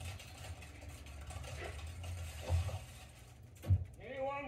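Mechanical clicking and whirring sound effects from a cartoon soundtrack, played through a TV speaker over a steady low hum, with two dull thumps, one past the middle and one near the end.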